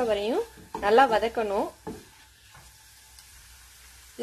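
Onion, garlic and spice masala frying in a nonstick pan and stirred with a spatula, with a faint sizzle that is left on its own for the last two seconds. A woman's voice speaks over it in the first two seconds.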